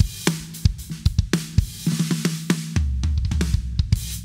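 Drum kit playing a quick fill-like pattern: a cymbal crash at the start, then rapid snare and tom strokes, ending on a low sustained boom for about the last second.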